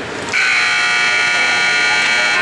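Ice arena scoreboard horn sounding one long steady blast, starting about a third of a second in, signalling the end of the period as the game clock hits zero.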